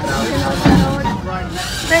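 People's voices over the steady low rumble of a moving park train.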